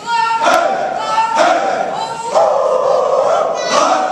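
A large group of soldiers' voices chanting loudly in unison in a large hall, in drawn-out phrases of about a second each.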